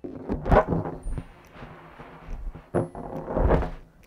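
A man blowing breath into a rubber balloon to inflate it, in two long blows, the second starting a little after two seconds in, with dull low thumps.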